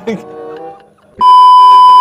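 A loud, steady, high-pitched beep begins about halfway through and holds without change: the test tone that goes with a TV colour-bars screen, used as a transition effect.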